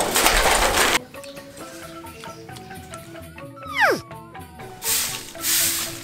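Light background music with steady held notes. A loud rustling, scraping burst fills the first second, a falling whistle-like sound effect drops steeply in pitch a little before the four-second mark, and two shorter rustling bursts come near the end.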